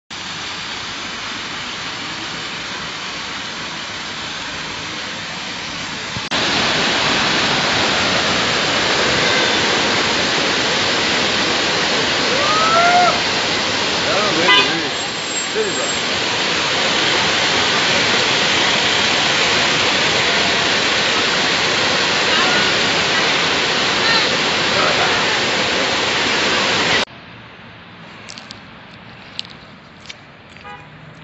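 Falling water rushing steadily: a softer rush of a fountain for about the first six seconds, then the much louder steady rush of the Pliva waterfall, which cuts off abruptly about three seconds before the end, leaving quieter town background with a few small clicks.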